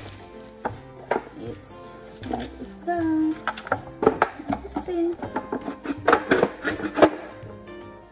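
Bamboo expandable cutlery drawer organizer knocking and clacking wood on wood as it is unwrapped from its plastic and handled, with a cluster of the loudest knocks near the end. Background music plays throughout.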